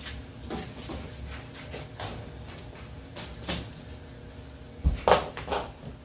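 Light knocks and taps of a length of rigid PVC pipe being handled and set against a wooden stand. A heavier thump comes near the end.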